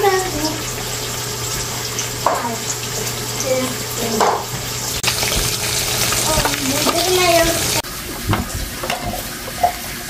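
Water running and trickling into a Brita water filter pitcher, a steady hiss that cuts off suddenly near the end.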